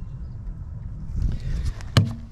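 Rustling handling noise and shuffling on gravel, with a low rumble, growing busier in the second second, then one sharp slap near the end as a hand hits a car tyre's tread.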